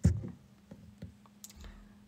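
A sharp knock, then a few light clicks of long fingernails tapping a phone, over a faint steady low hum.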